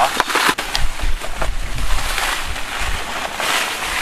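Bubble wrap and a cardboard box rustling and crinkling in irregular crackles as a watermaker pump on its wooden board is lifted out, over a low rumble.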